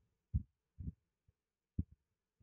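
A few soft, low thumps at uneven intervals, the first the loudest.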